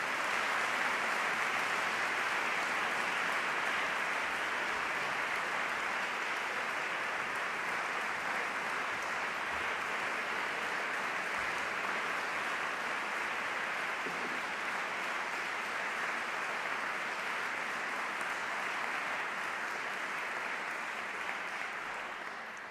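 Audience applauding, steady and sustained, starting to die away near the end.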